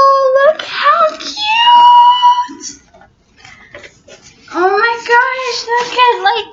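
A woman's voice making drawn-out, sung-like excited tones without words, in three stretches with a pause in between. The middle stretch is pitched higher than the others.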